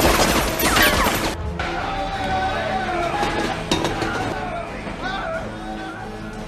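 Film soundtrack: a score of held, sustained notes, with a loud noisy crash-like burst of sound effects in about the first second.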